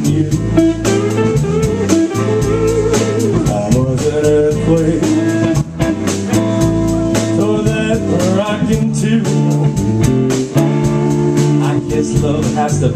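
Live blues band playing: electric guitars, electric bass and drum kit, with cymbal strokes repeating evenly to keep the beat.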